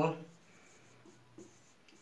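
Marker pen writing on a whiteboard: faint scratching strokes with a couple of light taps.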